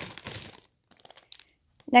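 A few faint, short crinkles of a thin plastic zip-top bag being handled, with near silence between them.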